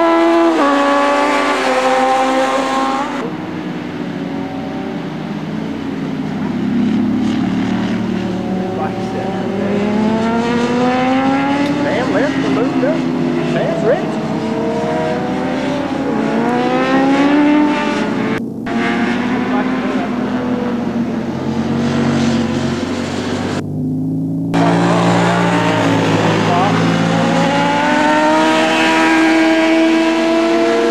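Several sportbike engines racing past at high revs, their pitch climbing and dropping back as the riders shift up through the gears, with overlapping bikes at different pitches. The sound cuts out briefly twice, about 18 and 24 seconds in.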